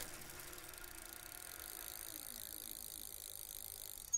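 Faint, steady sound effect of a bicycle rolling.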